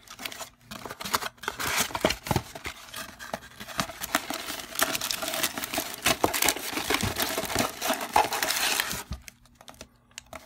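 A cardboard trading-card box being torn open by hand: a continuous run of paperboard ripping, scraping and crinkling as the flap is pulled back. It dies down about a second before the end.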